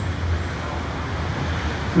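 Street traffic noise: a steady wash of road vehicles with a constant low drone.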